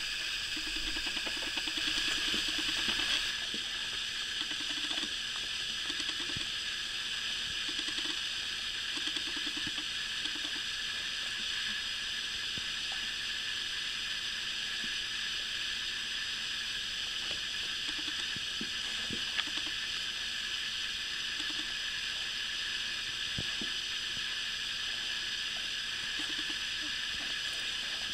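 Steady hiss of recording noise, with faint short low pulsed sounds a few times.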